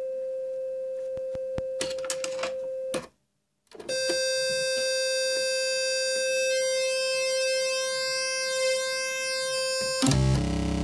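Freshly built Befaco Even VCO analogue oscillator module putting out a steady held tone, being checked against a chromatic tuner after assembly. The tone is plain and nearly pure at first, cuts out for about half a second some three seconds in, then returns at the same pitch with a bright, buzzy timbre full of overtones, growing a little richer near the middle.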